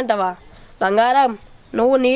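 A boy singing a Telugu folk song in long, drawn-out phrases. Under the singing runs the steady high trill of a cricket.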